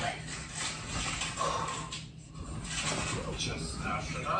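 Faint, indistinct speech over a low steady background hum.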